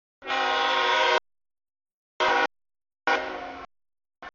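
CSX freight locomotive's air horn blowing for a grade crossing, a chord of several steady tones. A long blast of about a second comes first, then a short blast a second later, then a third blast that fades near the end.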